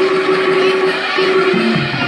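Live accompaniment music for Vietnamese classical opera (hát bội): a long held note over dense percussive clatter, with a lower note coming in near the end.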